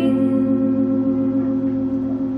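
Background music: a song holds a steady, ringing chord.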